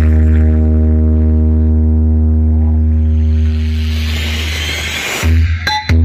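A DJ sound system playing loud electronic music: one long held deep bass note with a stack of overtones for about five seconds, then breaking into short chopped bass hits near the end.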